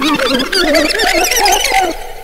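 A dense run of high, wavering squeals and squeaks inside a dancehall track, with the beat and bass dropped out.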